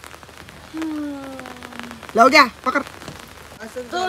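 Rain falling, with scattered drops ticking sharply on nearby surfaces. Over it a person's voice makes one long, slowly falling hum about a second in, then a loud short call just past two seconds.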